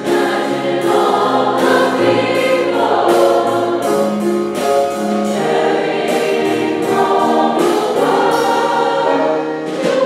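Large mixed choir of male and female voices singing sustained chords in several parts, the notes changing every half second to a second.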